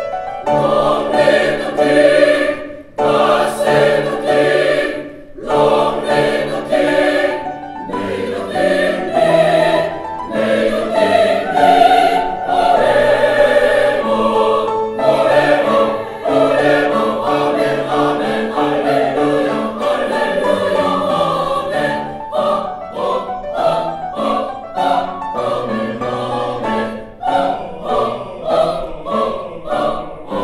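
Mixed choir singing a Baroque choral anthem with grand piano accompaniment, in phrases broken by brief pauses that turn into short, detached chords in the last third.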